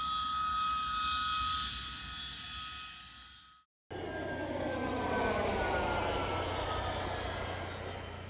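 Jet aircraft engines in two clips. First a steady turbine whine with several high tones, fading out about three and a half seconds in. After a brief cut to silence, a jet passes by with a roar and a whine falling in pitch.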